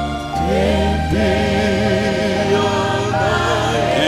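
Gospel worship music: voices singing a slow song, with a wavering melody over sustained chords and a steady bass.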